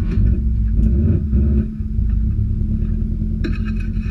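Mitsubishi Lancer Evolution IV rally car's turbocharged four-cylinder engine idling, heard inside the stripped cabin, with a brief swell about a second in. A few light clicks near the end.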